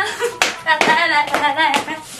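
A run of sharp hand claps, with a woman's wavering, sing-song voice between them.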